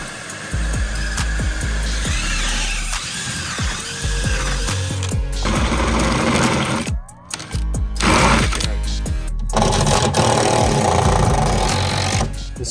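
Cordless DeWalt drill driving a hole saw through the sheet-metal back of an electrical meter cabinet, cutting a hole for the service cable connector, with background music playing over it. The sound breaks off sharply about seven seconds in, then picks up again.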